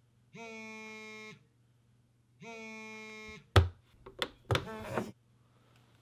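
Smartphone vibrating on a hard nightstand for an incoming call: two buzzes about a second long with a second's pause between them. Then a sharp knock and several clicks and rustles as a hand grabs the phone.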